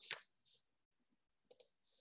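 Near silence broken by two quick clicks about a second and a half in, a computer mouse advancing a presentation slide. There is a brief soft hiss near the start.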